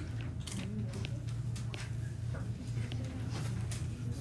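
Classroom room tone: a steady low hum under faint murmuring children's voices, with scattered small clicks and taps.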